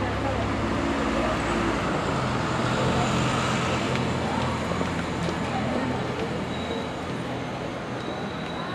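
Single-deck diesel bus engine running as the bus drives past at low speed. Its note shifts a couple of seconds in, then eases as it moves away, over street traffic noise.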